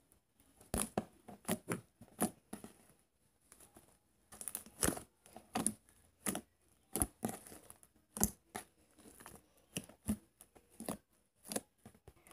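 Fluffy slime made with shaving cream being stretched and pulled apart by hand, giving irregular short sticky pops and crackles.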